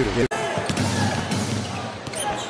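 A basketball bouncing a few times on a hardwood court over steady arena crowd noise, after an abrupt cut in the audio just after the start.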